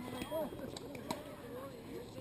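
Voices talking at a distance, several people at once, with one sharp knock about a second in.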